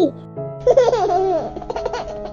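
A baby laughing and giggling in short, wavering bursts, starting about half a second in, over steady background music.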